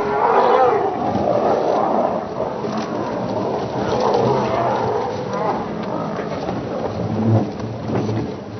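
Several lions growling and snarling together without a break, the sound wavering up and down in pitch, as in a fight or squabble between pride members.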